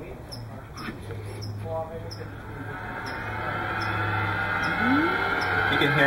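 Sound playback from a remote-controlled R2-D2 replica droid's onboard speaker, starting under a steady low hum and building in loudness through the second half into music.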